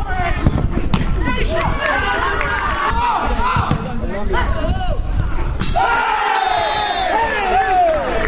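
Players and spectators shouting and calling during an amateur football match, one long falling shout near the end, with a couple of sharp knocks and wind rumbling on the microphone.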